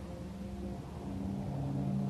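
A low, steady drone of several held tones, slowly growing louder.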